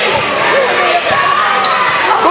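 A basketball dribbled on a hardwood gym floor during play, with voices calling out across the hall.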